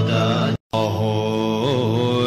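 Tibetan Buddhist mantra chanted in a low voice over a steady drone. It cuts out completely for a split second about half a second in.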